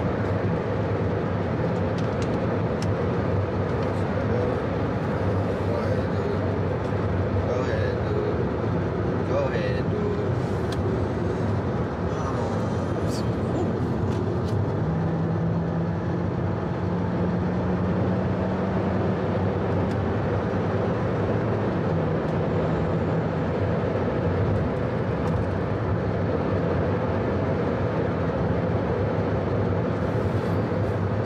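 Steady road and engine noise inside a moving car's cabin. A low drone rises a little in pitch about halfway through, then settles back.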